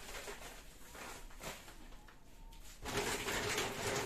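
Rustling of a large plastic shopping bag as a hand rummages in it, starting about three seconds in; before that, only light handling clicks.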